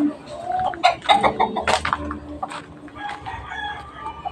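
A rooster crowing, a burst of pitched calls lasting about a second and a half, starting about half a second in.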